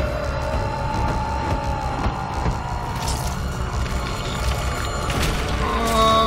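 Tense soundtrack music from an animated show: a long held note that slowly sinks in pitch over a deep rumble, with a couple of sharp hits about three and five seconds in.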